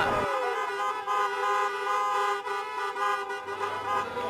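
Car horn held in one long, steady blast lasting over three seconds.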